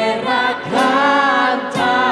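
Live worship music: several voices singing a Spanish praise song together in long held notes, over a church band's guitars and keyboard.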